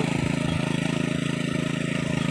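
Walk-behind power tiller engine running steadily with a fast, even pulse as the machine works through wet paddy mud.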